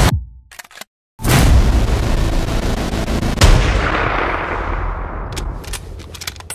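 Cinematic trailer sound effects: a rising swell cuts off abruptly into about a second of silence. Then a heavy boom hit with a long fading tail, and a second hit about two seconds later that fades out.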